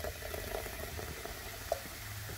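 Coca-Cola pouring from a can into a plastic bucket and fizzing as it foams up, a steady hiss dotted with tiny pops of bursting bubbles.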